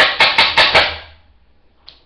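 Hard makeup items knocking and clattering together close to the microphone: about four quick, loud knocks in the first second, then quiet.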